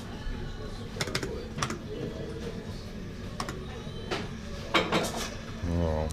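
Hill Billionaire fruit machine being played: a series of sharp clicks from its buttons and reels as they spin and stop, and a short low electronic buzz from the machine near the end.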